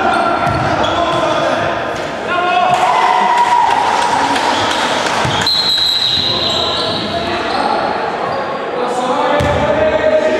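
A basketball bouncing on a hardwood gym floor during live play, with players' voices calling out, all echoing in a large sports hall.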